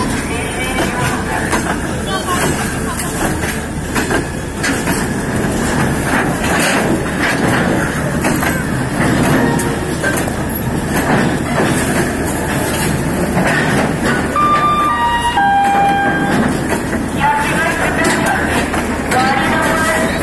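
Busy railway platform: steady crowd chatter and rail noise. About 15 seconds in, the station's public-address system plays a short electronic chime of a few notes stepping down in pitch.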